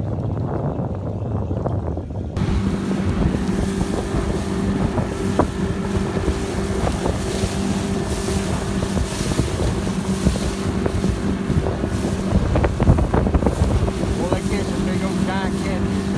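Bass boat's outboard motor running at speed with a steady engine note, under wind rushing over the microphone and water hissing off the hull. It starts abruptly about two seconds in; before that there is only a low rumble.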